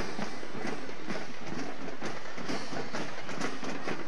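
Marching band drumline playing a steady cadence, a regular run of drum strokes without a clear melody.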